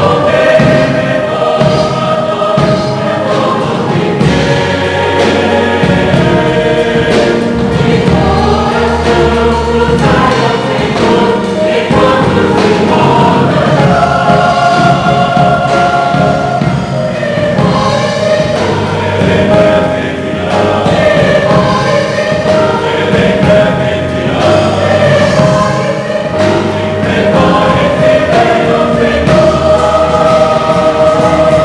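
Mixed church choir of men's and women's voices singing a Christmas cantata in parts, with steady low notes underneath.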